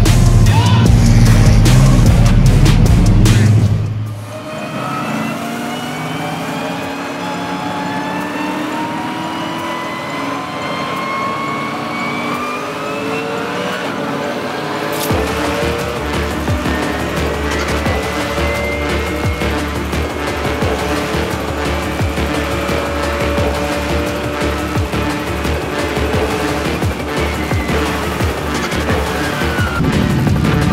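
GT3 race car engines running as the field gets under way, mixed with soundtrack music. The engine rumble is loudest in the first few seconds; then a music build slowly rising in pitch takes over, with a deep bass joining about halfway through.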